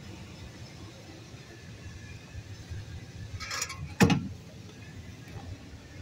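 Steady low hum inside a van's cabin, with a brief rustle and then a single sharp knock about four seconds in.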